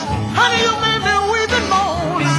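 A Chicago blues band playing, with a lead line that bends and wavers up and down in pitch over the rhythm section.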